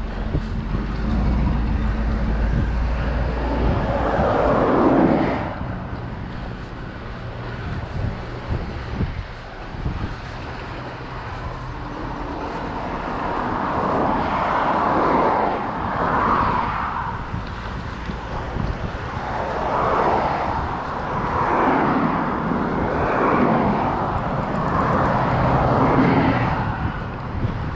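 Road traffic heard from a bicycle on the road shoulder: a low engine rumble from cars near the start, then several vehicles passing one after another, each a swell of engine and tyre noise.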